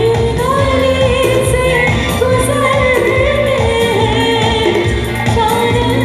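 A woman singing a Bollywood song live with a band, her long held, gliding vocal line over keyboards and a steady drum beat, amplified through a PA.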